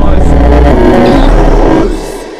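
Harsh noise music: a loud, distorted wall of noise over a heavy low bass, starting to die away near the end.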